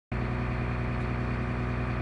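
Challenger MT400-series tractor's diesel engine idling steadily, heard from inside the cab with the transmission in neutral. It comes in abruptly just after the start.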